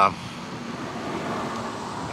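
Road traffic noise: a steady hum that swells a little in the middle.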